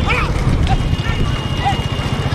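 Bullock carts racing on a tarmac road: the bulls' hooves clattering and the carts rolling over a low, fast-pulsing rumble, with short shouts from the drivers and runners urging the bulls on.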